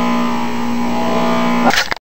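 Electric centrifugal juicer (Jack LaLanne Power Juicer) motor running with a steady hum. Near the end there is a brief rattle, and the sound then cuts off abruptly.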